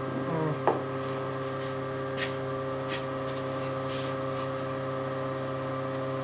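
CNC router Z-axis stepper motor whining at a steady pitch as the machine runs a touch-plate probe, driving the bit upward instead of down onto the plate: probing in the wrong direction. A few faint clicks sound over it, and the whine stops near the end.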